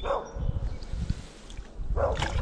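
Handling noise of a phone camera being moved: low, uneven bumping and rubbing as it brushes against clothing, after a short burst of sound right at the start.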